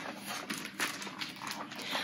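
Rustling and soft handling noise as a large hardcover picture book is opened and its pages turned, with a few brief papery swishes.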